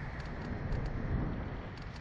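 Wind buffeting the microphone of the camera mounted on a swinging SlingShot ride capsule: a low, steady rumble.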